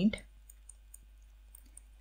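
Faint, scattered light clicks of a stylus on a pen tablet while handwriting, a handful of ticks spread over the pause.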